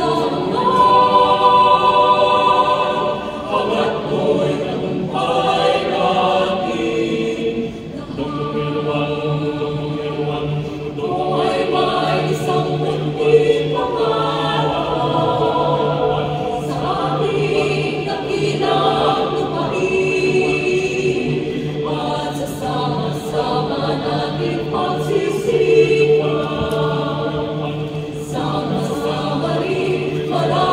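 Mixed-voice choir singing a cappella, the upper voices moving in phrases over low voices holding a steady note.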